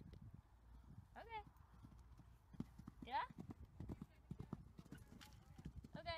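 Faint hoofbeats of a horse moving in a quick, uneven run of thuds. Two short rising calls are heard, about one second and three seconds in.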